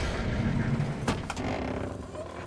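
Heavy tanker truck's engine rumbling as it drives, fading over the two seconds, with two sharp clicks a little after the first second.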